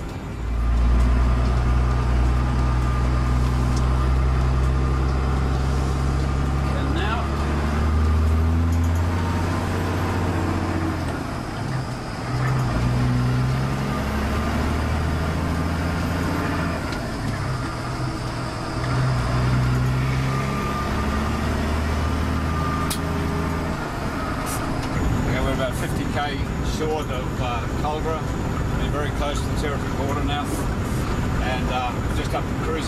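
Heavy diesel truck engine running under way, heard inside the cab of a Cat road-train prime mover. Its low note holds steady for several seconds at a time and changes pitch in steps, as with gear changes, and fades into the background about three-quarters of the way through.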